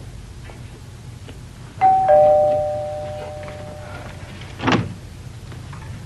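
Two-tone doorbell chime: a higher note, then a lower note, ringing out and fading over about two seconds. A short thump follows near the end.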